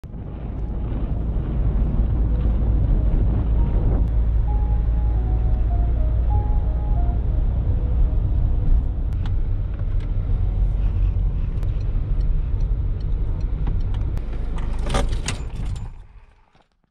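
A car being driven, heard from inside the cabin: a steady, low engine and road rumble. A few faint melodic notes sound in the middle, and a couple of sharp clicks come just before the sound cuts off.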